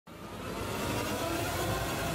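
Steady outdoor rushing noise with vehicle engines running, fading in and growing louder over the first second.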